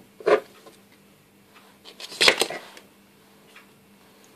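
Kitchen knives clicking against a plastic chopping board as carrot and cucumber are chopped: a few scattered strikes, the clearest a quick cluster about halfway through, over a faint steady hum.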